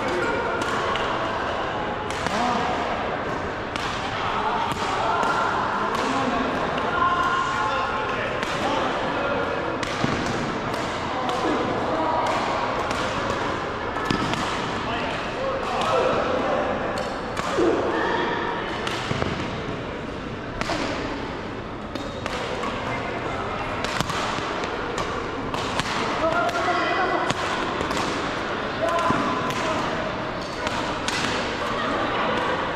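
Badminton rackets striking a shuttlecock in rallies, sharp hits coming irregularly about once or twice a second, over a steady chatter of voices in a large sports hall.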